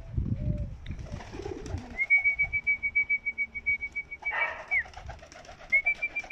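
Domestic fancy pigeons cooing in low, rolling calls, then a high, rapid trill held at one pitch for almost three seconds, starting about two seconds in and starting again near the end.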